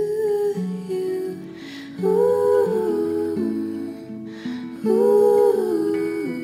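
A female voice singing wordless, humming-like held notes over an acoustic guitar, in a soft folk-pop song. Two long vocal notes swell in, one about two seconds in and one near the end, each falling away afterwards, while the guitar keeps changing notes underneath.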